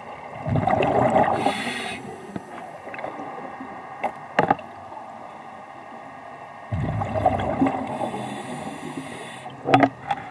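A scuba diver's regulator heard underwater: two breaths about six seconds apart, each a bubbly rumble followed by a hiss. A few sharp clicks fall between them and near the end.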